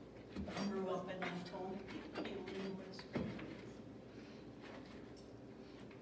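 Rubber spatula stirring wet grated-zucchini fritter batter in a glass mixing bowl, with small scrapes and clicks and one sharper knock about three seconds in. Low, indistinct talk in the first half.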